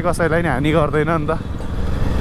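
A voice talking over a motorcycle engine running steadily at low road speed; the voice fills the first second or so.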